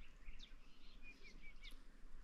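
Faint bird calls: a few short, high chirps and a quick run of four brief notes about a second in, over low outdoor background noise.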